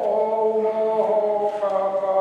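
Liturgical chant during a Mass: singing in long held notes that step from one pitch to the next every second or so.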